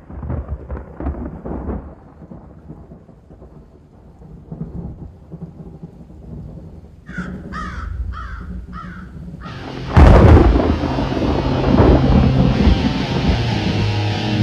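Storm sound effects opening a death-metal track: rumbles of thunder, then a bird calling about five times in quick succession, then a sudden loud thunderclap about ten seconds in, followed by steady rain with a low sustained note underneath.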